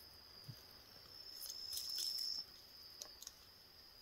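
Crickets trilling steadily in a high, thin tone, growing louder for about a second in the middle, with a faint soft knock near the start.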